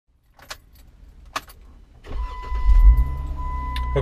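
Key clicks in the ignition, then the Jeep's engine cranks and catches about two seconds in and settles into a steady idle. A steady high electronic tone comes on as it starts.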